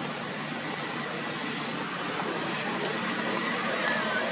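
A steady, even background noise with no distinct events.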